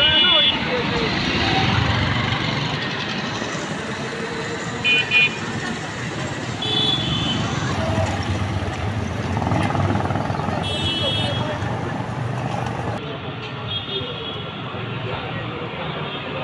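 Street traffic noise with several short, high-pitched horn toots repeating every few seconds.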